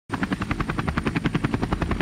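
Helicopter rotor chop, a steady fast beating of about a dozen pulses a second.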